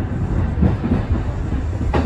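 Kintetsu express train running on the track, heard from inside the front car: a steady low rumble of wheels on rail, with a couple of sharp clacks from the wheels crossing rail joints, one about half a second in and one near the end.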